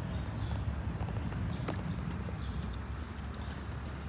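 Footsteps of a person and a dog walking on asphalt, faint scattered clicks over a steady low rumble.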